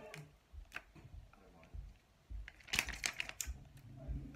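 Thin plastic protective film being peeled off a phone's screen and handled: a few scattered ticks, then a denser crackle of crinkling plastic between about two and a half and three and a half seconds in.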